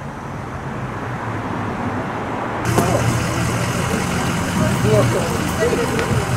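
Outdoor street ambience: steady traffic noise with a low engine hum, stepping up louder about three seconds in, with faint voices of people talking over it.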